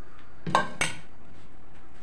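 Two metallic clinks about a third of a second apart, a steel bowl and spoon knocking together, each ringing briefly.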